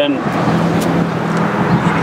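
A steady low motor hum over outdoor background noise, like a vehicle engine running nearby.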